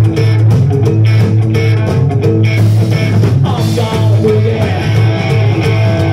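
Live rock-and-roll band playing: electric guitars over a steady bass line and drum-kit beat.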